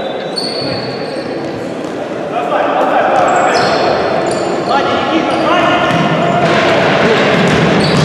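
Futsal play in a sports hall: shoes squeaking on the court floor and the ball being kicked, with shouting voices that grow louder from about two and a half seconds in as the attack nears the goal.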